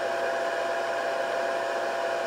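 Steady whir of the Scotle HR6000 rework station's fan running while the station is powered and heating.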